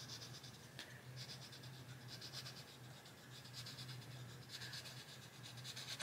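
Blue Arteza Expert coloured pencil shading a light layer on paper: a faint scratching that comes and goes with the strokes.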